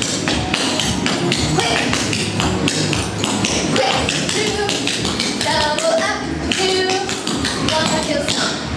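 Clogging shoes' taps striking a hard studio floor in fast, dense runs of steps as a clogging combination is danced.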